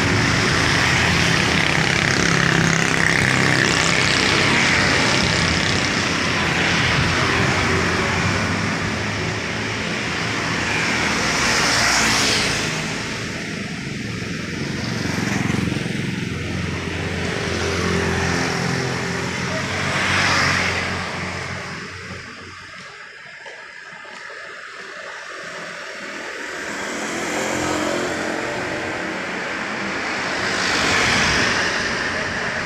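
Motorcycles and other road traffic passing one after another on a wet road, engines and tyre hiss swelling and fading as each goes by. Traffic is heavy at first, there is a lull about three-quarters of the way through, and then another vehicle approaches near the end.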